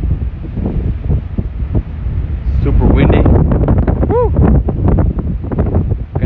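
Strong blizzard wind gusting against the phone's microphone, a loud low rumble that rises and falls.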